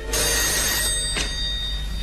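Telephone bell ringing, starting suddenly, with a single click a little over a second in.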